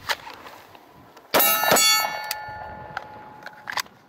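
A single sharp hit about a second and a half in, then a bright metallic ring with several clear tones that fades over about two seconds. This is typical of a steel target plate being struck.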